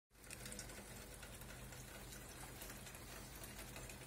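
Faint low steady hum with scattered light ticks and clicks.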